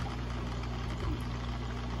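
Aquarium filter running: a steady low hum with a faint hiss of moving water.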